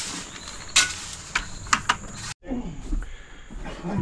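Scuffs and a few sharp knocks of a person clambering through a crawl-space access opening and handling stacked plastic buckets. The sound cuts off suddenly a little past halfway, and faint scuffling follows.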